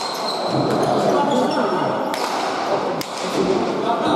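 Basque pelota ball being struck and rebounding off the walls and floor of an indoor court during a rally: sharp, echoing cracks, the clearest about two and three seconds in, over a steady murmur of spectator voices.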